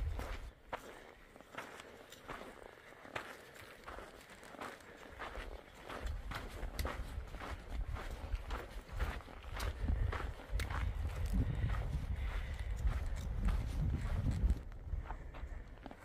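Hikers' footsteps crunching along a dirt and granite trail, with the sharp clicks of trekking pole tips striking the ground. A low rumble on the microphone sets in about six seconds in.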